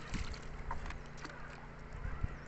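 Gill net being hauled by hand over the side of a wooden boat: a few small splashes and knocks of the wet net against the hull, over a low rumble of wind on the microphone.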